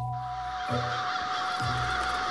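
A large flock of birds roosting in and flying around a bare tree, calling all at once in a dense, continuous chatter. Music runs underneath, with a held tone and a low note repeating about once a second.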